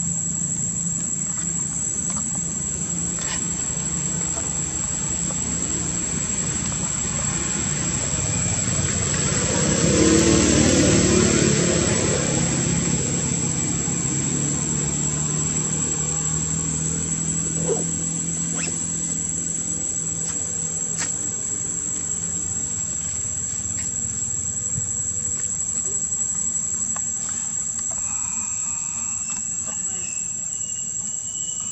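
Insects buzzing in a steady, high-pitched chorus over a low hum. About ten seconds in, a louder rush of noise from an unknown source builds up and fades away.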